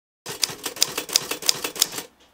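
Typewriter keys clacking in a quick, fairly even run, about three strong strikes a second with lighter ones between, starting a moment in.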